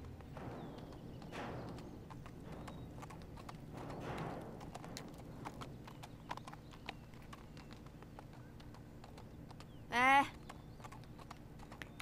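Two horses walking on a dirt path, their hooves clip-clopping in a loose, uneven patter. A brief pitched call sounds about ten seconds in.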